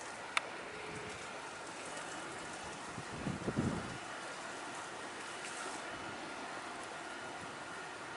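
Steady outdoor background noise with a faint, even high whine running through it. A single sharp click comes about half a second in, and a brief low rumble comes around the middle.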